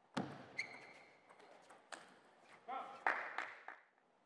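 Table tennis rally: the plastic ball clicking off rubber bats and the table several times, with squeaks of shoes on the court floor, ending in a brief loud vocal burst from a player about three seconds in as the point is won.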